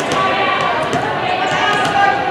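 A volleyball being bounced on a hardwood gym floor, a few sharp smacks, over the chatter of voices filling the gym.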